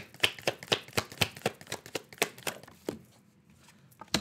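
Tarot cards being shuffled by hand: a quick, irregular run of card clicks and snaps for about three seconds, stopping near the end.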